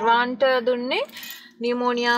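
A woman speaking, with a short pause a little past halfway that holds a brief faint noise.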